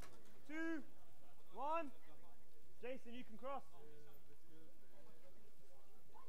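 A man's shouted calls: two single short cries, then a quick run of four, each rising and falling in pitch, over a steady low hum.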